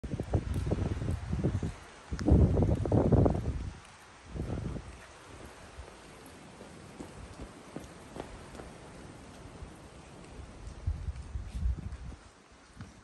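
Wind gusting across the microphone, strongest in the first four seconds and again briefly near the end, with footsteps on a cobblestone path.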